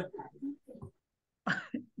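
A person coughing, with faint short fragments of voice over a video-call connection.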